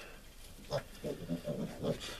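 Young piglets grunting quietly: a run of short, low grunts starting just under a second in.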